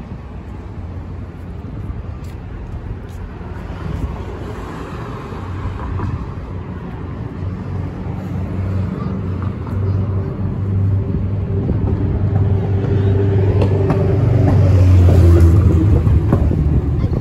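Street traffic: a motor vehicle's engine hum that grows steadily louder and is loudest shortly before the end as the vehicle comes close.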